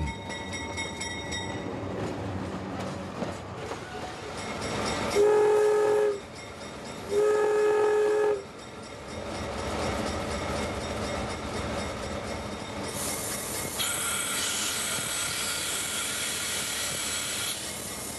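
Diesel locomotive horn sounding two blasts of about a second each, heard from the cab over the steady running of the engine and wheels on the track. Later a higher-pitched ringing sound joins the running noise for a few seconds.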